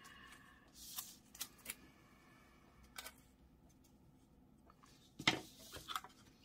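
Paper and plastic sticker sheets being handled: faint rustles and a few light clicks, then a louder rustle and slide about five seconds in as the planner is moved on the table.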